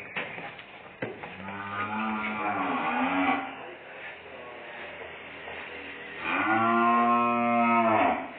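Young cattle mooing twice: a shorter, wavering call about a second and a half in, then a longer, louder, steadier call from about six seconds in.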